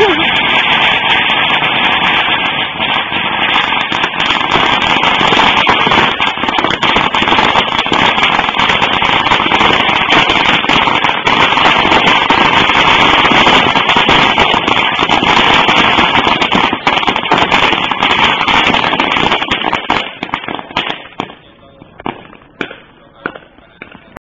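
A long string of firecrackers going off in a loud, dense, unbroken crackle, thinning to scattered single pops about twenty seconds in.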